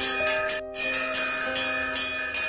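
Large hanging metal temple bell rung over and over, its clapper striking about three times a second and each strike ringing on, over background music. The sound drops out for an instant about a third of the way in.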